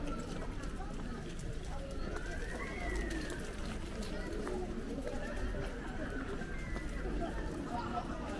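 Outdoor ambience of a busy pedestrian shopping street: passers-by talking, over a steady low rumble.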